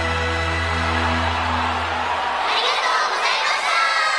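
The song's final held chord sounds and stops about two and a half seconds in. A crowd then cheers and screams in high voices, loudest near the end.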